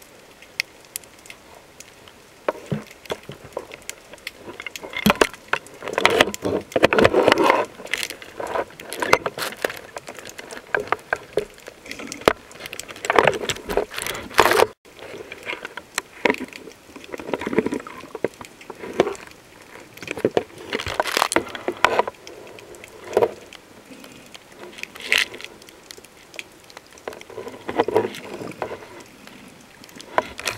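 Underwater recording through a camera housing: bursts of bubbling noise a second or two long, recurring every few seconds, mixed with small clicks and rattles.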